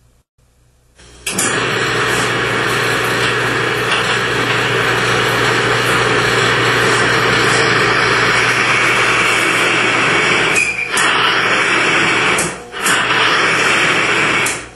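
Oil-test friction machine running under load: its electric drive motor turns a steel race against a test bearing in an engine-oil bath, giving a loud, steady metal-on-metal grinding from about a second in. The sound dips briefly twice near the end as the oil film breaks down and the bearing heads for seizure.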